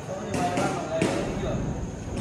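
Indistinct voices of several young men talking, with a few sharp knocks near the start and about a second in.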